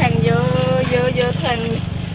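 A voice talking, with one drawn-out vowel, over the steady low hum of a small engine running.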